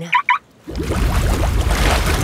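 Cartoon sound effect of sea water surging and splashing as a small submarine surfaces. It starts suddenly about two-thirds of a second in and stays loud, with a deep rumble underneath, after a short 'Wow!'.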